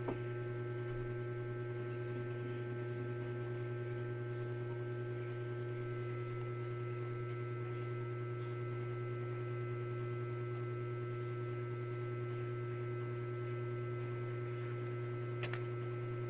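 A steady electrical hum made of several constant tones, strongest at the low end, with a faint click near the end.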